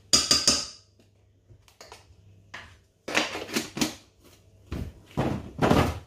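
Kitchen handling noises: a plastic spice jar and cooking utensils clinking and knocking over a pot. A sharp clink right at the start, then scattered short knocks, with the loudest bumps near the end.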